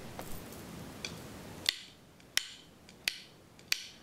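A metronome clicking a steady beat, about one and a half clicks a second, with four clicks from a little before halfway through, over a soft room hiss that fades as the clicks begin. It sets the tempo for the count-off of a marching drill.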